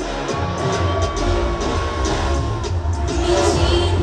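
K-pop song played loud over a concert sound system, with a heavy bass beat and a held high note, while the crowd cheers.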